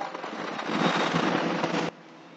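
Chalk scratching and tapping on a blackboard while words are written, a dense crackle of small clicks. It cuts off suddenly near the end.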